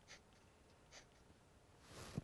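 Near silence broken by two faint, brief scratches of a pen drawing on a projector sheet.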